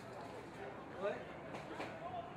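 Rugby players' voices shouting on the pitch, short unintelligible calls about a second in and again near the end, over open-air ambience. These are typical of players calling a lineout before the throw-in.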